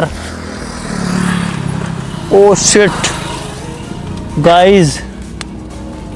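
A Mahindra Scorpio SUV's engine running with a low steady hum that swells briefly about a second in, broken by two short voice exclamations.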